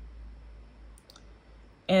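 Sewing machine stitching quietly: a low hum that fades out about a second in, with a couple of faint clicks.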